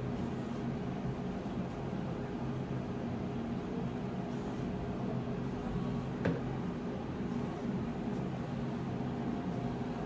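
Steady low mechanical hum in the room, with one short click about six seconds in.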